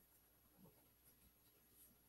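Near silence: room tone, with only a very faint brief sound about half a second in.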